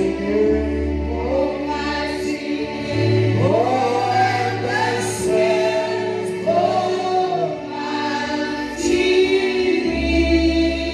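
A gospel worship song: a male lead singer with female backing vocalists, sung over steady low instrumental notes.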